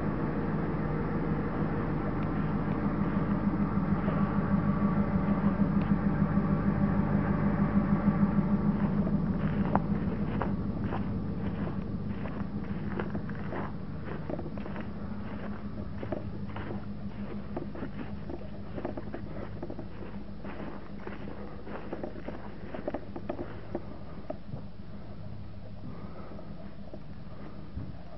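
A vehicle engine idling with a steady low hum, loudest in the first eight seconds or so. From about nine seconds in, footsteps crunch on frozen, snow-dusted ground and dry grass at a walking pace, thinning out near the end.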